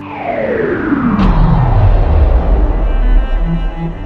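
Slow-motion sound effect: a long tone sliding down from high to very deep over about two seconds, then a low rumble that holds until the end.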